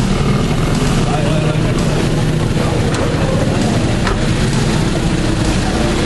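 Busy street noise with a motor vehicle engine running and crowd voices in the background.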